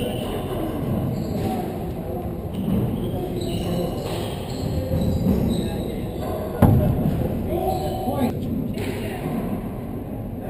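A single loud, sharp smack of a gloved hand striking a handball, about two-thirds of the way through, ringing briefly in the enclosed four-wall court, with a few fainter knocks of ball and shoes on the floor; indistinct voices murmur underneath.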